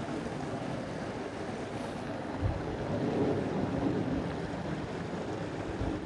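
Wind buffeting the microphone: a steady rushing noise, with a soft low thump about two and a half seconds in.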